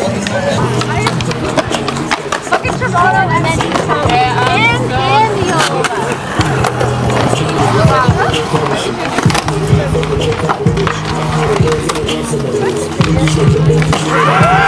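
Skateboard wheels rolling and carving on the walls of a concrete bowl, over music with a steady, stepping bass line and wavering vocal-like lines.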